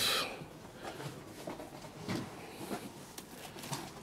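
Faint rustling and small light knocks of hyacinth stems and leaves being handled, with a short rustle at the very start.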